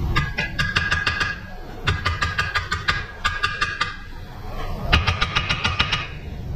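Pneumatic impact wrench hammering on a fastener of a Toyota Land Cruiser's front lower control arm, in four bursts of a second or so each with short pauses between, a ringing metallic tone running through the rapid blows.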